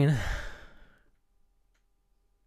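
A man's voice trailing off at the end of a word into a breathy sigh that fades out within about a second, followed by near silence.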